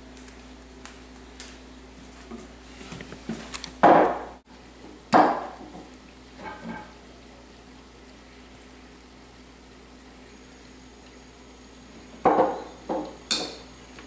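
A few sudden knocks and clunks of things handled on a wooden table, two loud ones about four and five seconds in and three more near the end as a bottle is stood back on the table, over a steady low hum.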